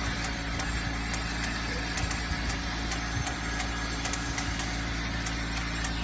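Optical O-ring sorting machine running, with its vibratory bowl feeder and conveyor giving a steady low hum and short, high ticks about two to three times a second.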